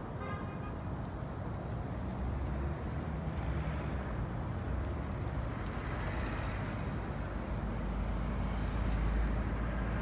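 Steady outdoor rumble and hiss, its low rumble swelling over the last few seconds.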